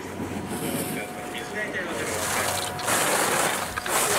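Skis carving slalom turns on snow: the edges scrape with a hiss on each turn, swelling about three times.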